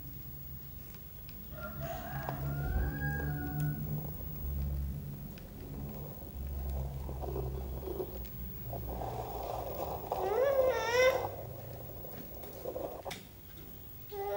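A toddler's wordless vocalising: soft pitched sounds early on, then a loud, high, wavering whine about ten seconds in.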